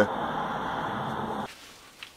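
Steady rush of road traffic going past. It cuts off suddenly about one and a half seconds in, leaving quiet room tone.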